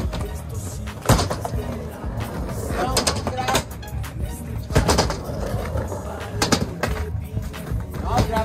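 Background music with a steady low beat, broken by several sharp clacks of skateboards hitting the concrete ramps and landing.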